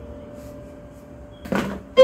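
The last notes of an electronic keyboard die away into a pause. About one and a half seconds in there is a single short thump.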